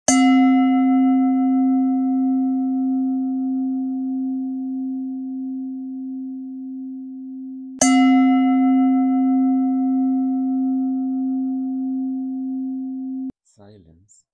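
A singing bowl struck twice, about eight seconds apart. Each strike rings on as a low steady hum with a slow wavering pulse, and its higher overtones fade first. The second ring is cut off suddenly near the end.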